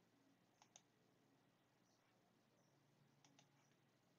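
Near silence, with a few faint clicks: one about a second in and a couple more after three seconds.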